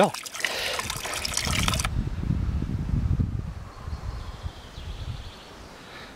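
Thin stream of spring water falling from a metal spout into a stone fountain basin, trickling and splashing. It cuts off abruptly about two seconds in, and a low rumble follows, fading over the next few seconds.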